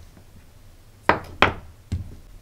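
Three short knocks from a small homemade battery tester and its wire probe being handled on a silicone workbench mat: two sharp ones about a second in, then a softer one near the end.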